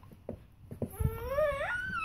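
Baby's whiny, high-pitched vocalization. It starts about a second in, rises in pitch, then holds as a thin high note.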